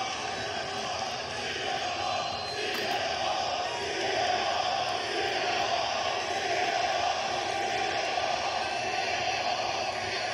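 Large arena crowd making a steady din of many voices, growing a little louder about four seconds in.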